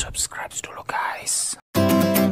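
A whispered voice with hissing 's' sounds, then a moment of silence and guitar music starting near the end.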